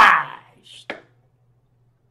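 A man's shouted word dying away, then a brief faint hiss and a single sharp click about a second in, over a faint low hum.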